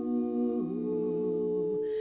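A women's barbershop quartet singing a cappella, holding a wordless sustained close-harmony chord that moves to a new chord about half a second in and is held to near the end.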